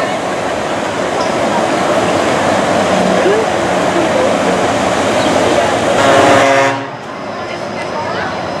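Red electric monorail train running past on its elevated beam, heard as a steady rushing noise with background crowd voices. The sound drops away suddenly about seven seconds in, leaving a quieter background.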